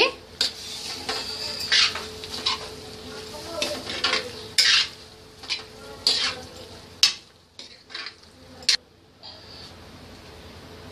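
Metal spoon stirring and scraping chickpea curry around a metal kadai, with irregular clinks and scrapes against the pan's side that thin out in the last few seconds.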